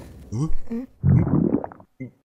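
Cartoon stomach-growl sound effect: two low gurgling rumbles, the second longer.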